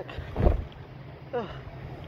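Wind rumbling on a phone microphone during a bike ride, a steady low buffeting.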